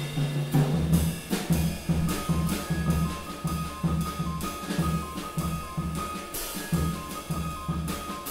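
Live band playing: a drum kit keeps a busy rhythm of snare and bass-drum strokes over plucked double bass notes. About two seconds in, a high two-note figure starts alternating above them.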